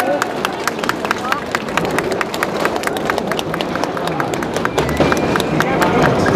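Car driving around the vertical wooden plank wall of a well of death: its engine running and a rapid, continuous clatter from the wall as the tyres pass over it. Voices are heard over it.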